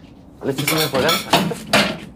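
Dishes and cutlery clattering at a kitchen sink: a run of sharp clinks and knocks starting about half a second in.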